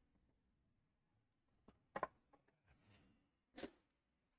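Near silence with a few faint, brief clicks and rustles, about two seconds in and again near the end.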